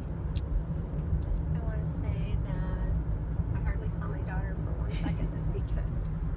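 Steady low road and engine rumble inside a moving car's cabin, with faint voices and laughter over it.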